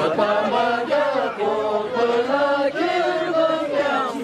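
A group of men singing a traditional Ladakhi song together in unison, in long held notes that move between pitches.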